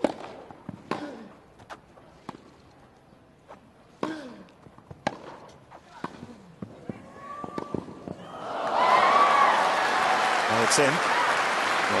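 Grass-court tennis rally: racket strikes on the ball about once a second, some with a player's grunt. After about eight seconds the rally ends on a winning passing shot and the crowd breaks into loud cheering and applause.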